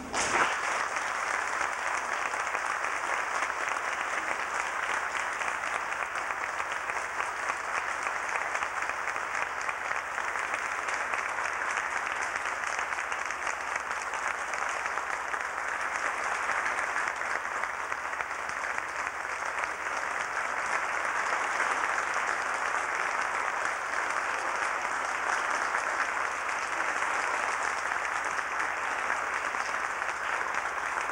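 Audience applauding, breaking out all at once and keeping up steadily.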